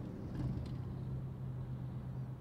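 Steady low hum of a running vehicle, heard from inside a minivan's cabin.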